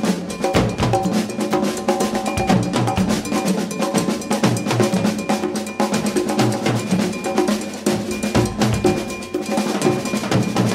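Live drum kit and conga drums played together in a busy percussion jam, a dense run of strikes several per second with no pause.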